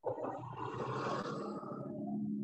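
Muffled, rumbling background noise from a video-call participant's open microphone, cutting in suddenly from silence. No clear words are heard.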